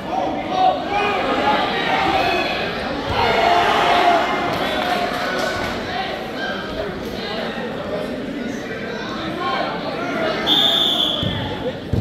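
Voices and chatter of spectators in a large gym, with a single short blast of a referee's whistle near the end, the signal to start wrestling again.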